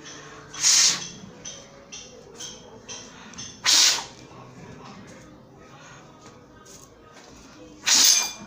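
A person blowing hard at a coin lying on a tabletop to push it toward a plate: three short, forceful puffs of breath about three seconds apart, close to the microphone.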